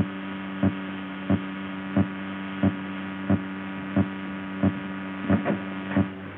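Steady electrical hum on an old film soundtrack, with regular short knocks about three every two seconds.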